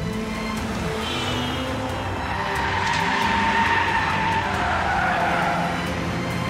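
A car's engine revs, then its tyres squeal in a long skid from a few seconds in, the squeal dropping in pitch near the end.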